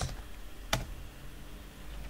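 Computer keyboard keystrokes as a short terminal command is typed: a few faint key taps and one sharper click about three-quarters of a second in, over a faint low hum.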